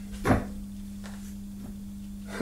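A steady low electrical hum from the bench setup, with a brief soft sound about a third of a second in. The Slosyn stepper motor turning on the bench makes no sound of its own.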